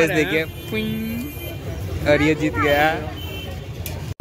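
Voices on a busy street at night, over the steady low rumble of road traffic.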